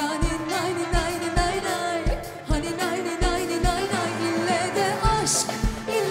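Turkish pop song playing: a singer's wavering melody over a steady drum beat.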